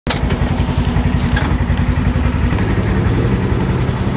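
Side-by-side UTV engine running steadily, a low pulsing sound with a slight shift in pitch about two and a half seconds in.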